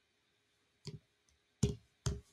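A few short, sharp clicks on a video-call line: a quick pair about a second in and a single louder one near the end, with dead silence between them.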